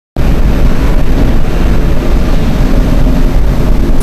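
Loud, steady low rumble with a hiss over it: continuous background noise with no speech.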